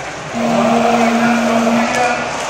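Football stadium crowd cheering and chanting after a goal, with one long steady note held over the crowd noise from about a third of a second in until near the end.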